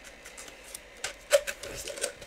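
Cardboard box being opened by hand: a few short, sharp scrapes and snaps of the cardboard flaps and packing, starting about a second in.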